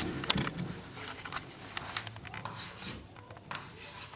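Chalk tapping and scratching on a blackboard in short, irregular strokes as a child writes numbers.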